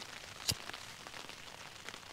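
Light rain falling on a Durston X-Mid tent's fabric, heard from inside as a faint even hiss with scattered small drop ticks. One sharp click stands out about half a second in.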